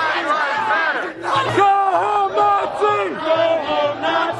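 A crowd of protesters shouting and yelling over one another, many loud voices at once.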